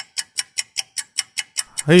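A clock ticking, fast and even, about five sharp ticks a second.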